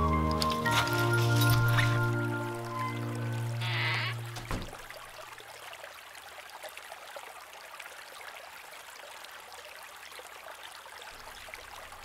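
Music with long held notes, ending about four and a half seconds in. After it, a shallow stream trickling quietly and steadily.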